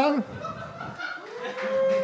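A single drawn-out vocal call from one audience member in the second half, rising a little and then held steady for about a second, over faint room sound. There is no real round of applause.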